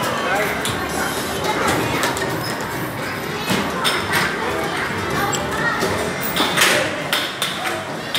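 Busy indoor arcade din: background voices and chatter mixed with music from arcade machines and kiddie rides, with scattered clicks and knocks.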